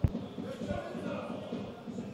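Faint football-stadium ambience with distant, indistinct voices, opened by one sharp click.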